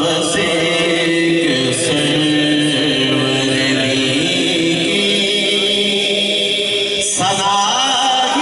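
A man reciting a naat, singing with long, held, sliding notes through a microphone, with a short break about seven seconds in.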